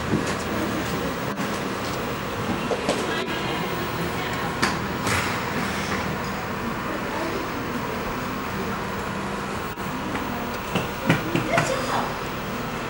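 A steady rumbling background noise with indistinct voices murmuring, and a few faint knocks.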